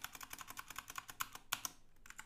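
Computer keyboard keys pressed in quick succession, about ten clicks a second, with a brief pause near the end, as text is deleted and retyped.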